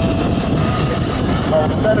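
Propeller engine of a single-engine aerobatic airplane running steadily during a vertical dive: a steady rumble with a faint held tone.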